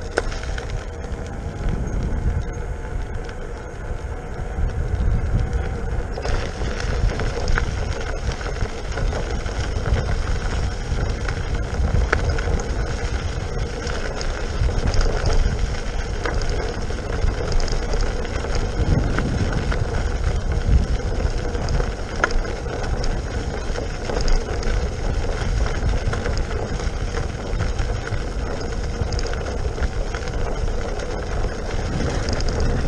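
Riding noise from a King Song S18 electric unicycle on a trail: wind rumbling on the microphone and the 18-inch tyre rolling over asphalt and then gravel. From about six seconds in, a rougher hiss joins the rumble.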